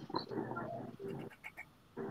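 A dog whining faintly behind a closed door, the sound thin and muffled as if heard through a video-call microphone.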